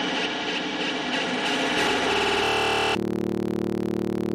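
Trance music in a beatless stretch. A dense, noisy synth wash gives way, about three seconds in, to sustained synth chords with a fast flutter, and there is no kick drum.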